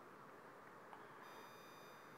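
Near silence: faint room hiss with a thin, steady high-pitched electronic whine that gets a little stronger about a second in.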